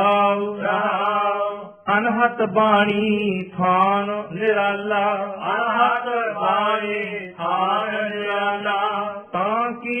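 A man reciting Gurbani verses in a slow, drawn-out chant, his voice gliding up and down through long phrases with brief breaths between them.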